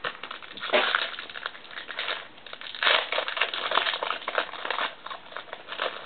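Trading-card pack wrapper being opened and crinkled by hand: irregular crackling in several flurries, strongest about a second in and again around three seconds in.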